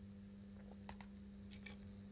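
Very faint sound of an 00 gauge model locomotive reversing slowly onto a wagon: a steady low hum, with a few light clicks about a second in and again a little later as the couplings meet.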